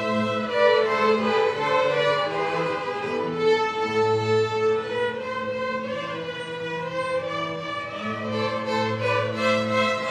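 Youth string orchestra of violins and cellos playing a classical piece, bowed chords moving over sustained low cello notes.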